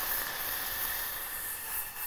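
White wine vinegar sizzling as it hits a hot saucepan of sliced shallots and tarragon, the start of a tarragon reduction: a steady hiss that eases off near the end.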